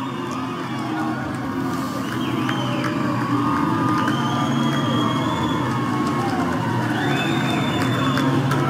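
Baseball crowd cheering and shouting for a home run, a steady wash of many voices with a few high held shouts.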